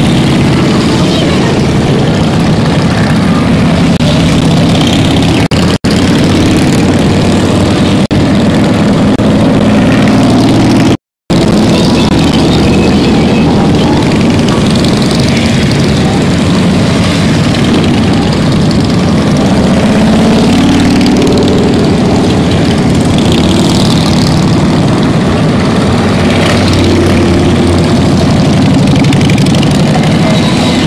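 A steady stream of large touring motorcycles riding past, their engines making a loud, continuous din that swells and shifts as each bike goes by. The sound cuts out for a moment about eleven seconds in.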